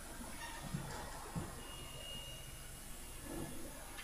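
Quiet church-hall ambience as a congregation sits down, with faint shuffling and a couple of soft knocks from the pews about a second in.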